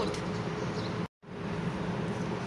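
Steady background noise with a low hum, broken by a moment of dead silence about a second in where the recording is cut.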